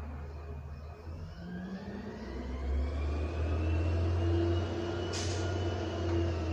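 Low engine rumble of a heavy road vehicle such as a bus or truck, growing louder about two seconds in, with a slowly rising whine as it pulls away. A short hiss follows about five seconds in.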